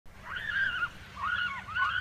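Gulls calling: three wavering, arching cries, each about half a second long, over a low steady rumble.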